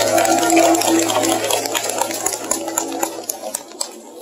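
The last held chord of a live band's music ringing out and dying away, joined in the second half by scattered short clicks and taps.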